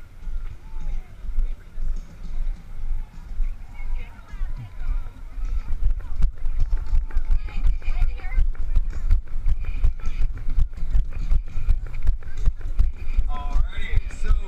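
Footfalls of the person carrying a body-worn action camera: an uneven walking pace, then about six seconds in a steady rhythm of jogging thuds that jolt the microphone, over a low rumble.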